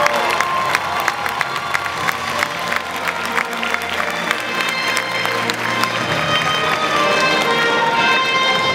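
Music playing over a hall's sound system while an audience claps and cheers, many sharp claps running through it.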